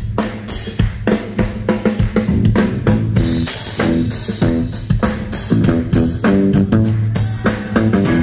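A live blues-rock band playing a drum-kit groove of bass drum, snare and cymbals over a bass line, with the audience clapping along to the beat.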